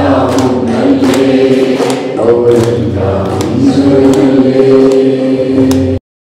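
A group of people singing a Malayalam song together, clapping in rhythm along with it; the sound cuts off suddenly at the end.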